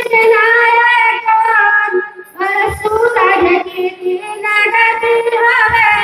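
Women singing a devotional jas folk song together through microphones, with a few low dholak drum strokes a few seconds in and near the end.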